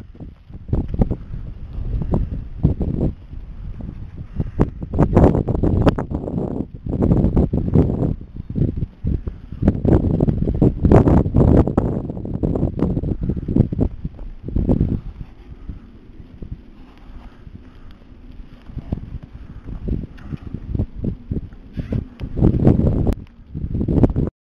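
Wind buffeting the microphone in irregular gusts, loudest through the middle, quieter for a while, then rising again near the end, with scattered sharp knocks.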